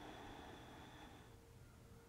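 Near silence: room tone, with one faint breath of about a second and a half at the start.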